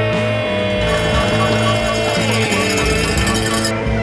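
Background music: a guitar-led rock track over a steady bass line, with one held note that bends downward about halfway through.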